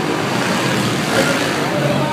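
Four-stroke dirt bike engines running on the track as a bike passes close by, mixed with spectator chatter.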